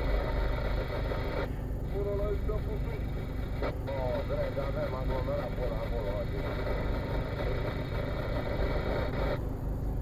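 Steady low rumble of a car idling in stopped traffic, heard from inside the cabin. A faint talking voice runs over it from about two seconds in.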